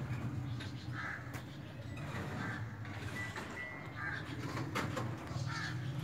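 A bird calling: four short calls, one about every one and a half seconds, over a low steady hum.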